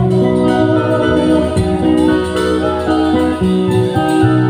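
Live band playing an instrumental passage of a Bengali film song, without singing: sustained melody notes over a bass line and percussion.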